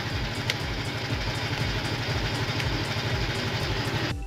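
Motorcycle engine idling steadily, with an even low pulsing.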